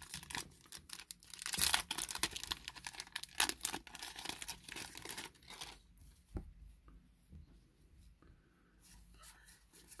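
Foil wrapper of a Magic: The Gathering collector booster pack being torn open and crinkled for about six seconds. After that it goes much quieter, with a few soft ticks as the cards are handled.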